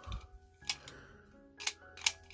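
Plastic clicks from a Burger King Mojo Jojo toy figure whose stiff mechanism is being worked by hand: three short, sharp clicks spread across two seconds.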